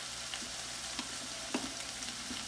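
Food sizzling in a hot pan, a steady hiss with small crackles, and a sharper click about a second and a half in.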